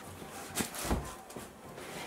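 Quiet fabric rustling as a cotton hoodie is pulled on, with a couple of short rustles and a soft thump around the middle.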